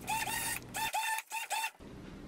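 A blender run in about six short pulses, the motor whining up at the start of each pulse as it blends a thick tofu cream.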